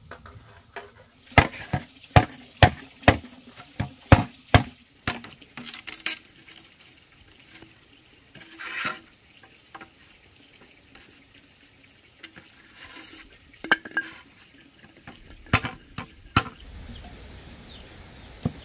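Machete chopping a green bamboo pole on a wooden block: a run of sharp chops about two a second, then a pause with a brief scrape, then a few more chops near the end.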